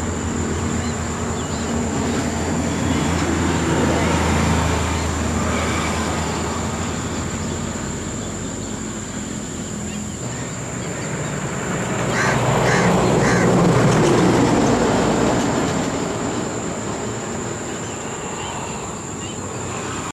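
Steady rumble of distant vehicles with a low hum, swelling to a peak about 4 s in and again about 14 s in, under a constant high-pitched hiss. Three short, evenly spaced calls sound about 12 s in.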